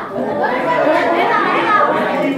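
Speech only: several voices talking over one another, classroom chatter.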